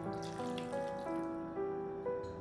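Beer poured from a bottle into a frying pan of tomatoes and onions, a splashing pour that stops about one and a half seconds in. Background music plays throughout.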